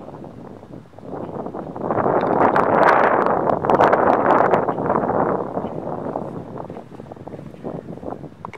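A gust of wind on the microphone: a rough rushing noise that swells about a second and a half in, peaks midway and dies down again.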